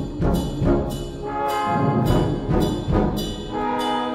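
Brass band playing a loud full-band passage: repeated accented brass chords punched out with percussion strikes. It eases into held chords near the end.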